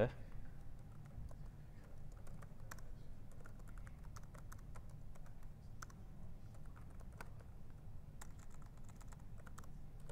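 Computer keyboard being typed on: irregular runs of quick key clicks as shell commands are entered, over a low steady hum.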